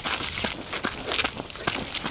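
Footsteps in trainers on a dry, stony dirt path, a quick uneven run of scuffs and crunches of grit and small stones underfoot.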